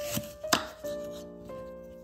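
Kitchen knife cutting through a peeled apple and striking a wooden cutting board: two sharp cuts within the first second, under steady background music.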